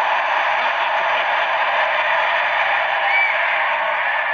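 Large arena crowd cheering in reaction to a put-down, a loud, steady wall of voices with no single voice standing out.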